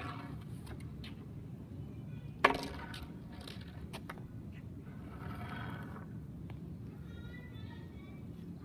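A single sharp knock about two and a half seconds in, over a steady low rumble of outdoor background noise.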